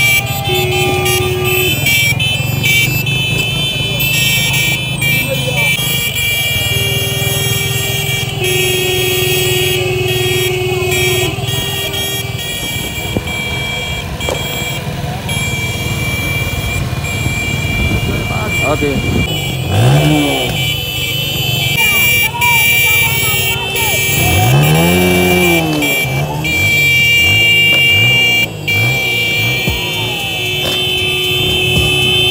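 A convoy of motorcycles running together, with engines revved up and down twice in the second half. Long steady horn blasts sound over the engines, along with crowd voices.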